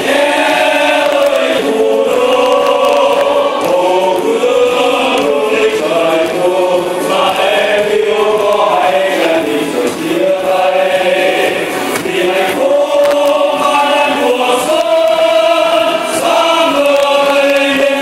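A choir singing a song with musical accompaniment, sustained and steady in level.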